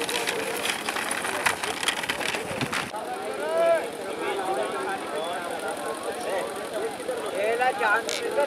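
Rapid, irregular clattering that cuts off sharply about three seconds in. Then a crowd of spectators shouting and calling out, many voices overlapping.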